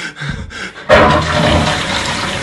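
A loud rush of water that starts suddenly about a second in and runs on steadily.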